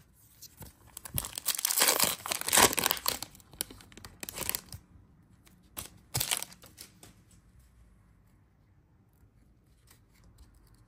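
Foil wrapper of a Topps Chrome trading-card pack crinkling and tearing open, in several short noisy bursts over about the first five seconds, the loudest between one and three seconds in.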